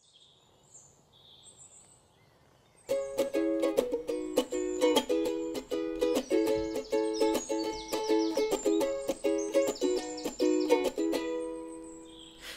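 Ukulele strummed in chords, starting about three seconds in after a quiet opening and dying away near the end.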